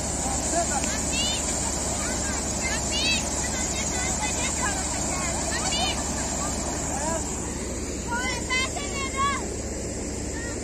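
Wheat threshing machine running steadily as wheat is fed into it. High chirping calls sound over it now and then, with a quick run of them near the end.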